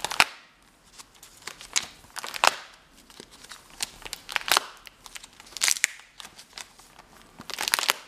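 Clear plastic sleeve pages of a ring-binder album crinkling and rustling as they are handled and turned, in several short crackly bursts with quieter gaps between.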